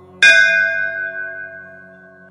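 A single bell struck once, about a quarter second in, ringing out with several clear tones that fade away over about two seconds, above a steady low drone.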